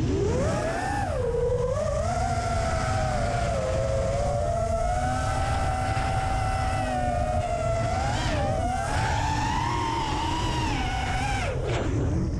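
Brushless motors and propellers of a freestyle FPV quadcopter whining in flight, the pitch rising and falling with throttle: a quick climb at the start, a steadier stretch in the middle, another climb and then a sharp drop near the end. Rushing wind rumble on the onboard microphone runs underneath.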